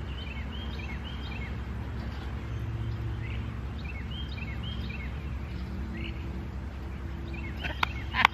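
Birds chirping: a run of short, quick downward-sliding chirps repeated again and again, over a steady low outdoor rumble. A sharp click sounds near the end.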